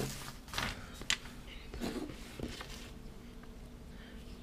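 Pages of a paper tool flyer rustling as they are flipped and pressed flat, with a few sharp swishes in the first second or so and fainter handling after.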